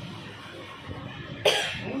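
A person coughs once, sharply, about one and a half seconds in, after a quiet stretch; a spoken word follows near the end.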